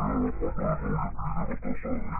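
A muffled voice in short bursts, dull with no treble, as picked up through a car's dashcam microphone.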